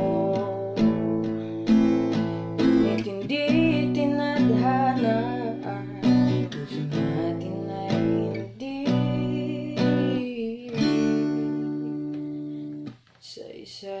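Strummed acoustic guitar with a voice singing a wavering melody over it. About a second before the end the guitar's last chord dies away and the music drops off sharply.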